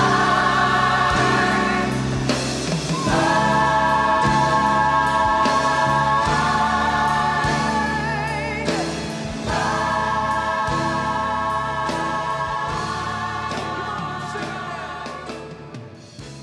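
Gospel choir singing long held chords at the close of a worship song, the notes changing every few seconds, fading out over the last few seconds.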